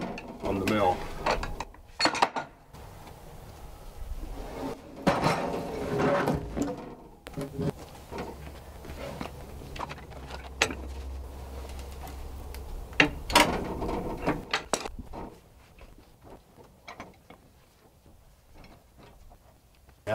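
A heavy white oak cant being turned and shifted on a sawmill bed with a cant hook: a string of separate wooden knocks and metal clunks as the timber drops and is pushed against the mill's stops. It goes much quieter for the last few seconds.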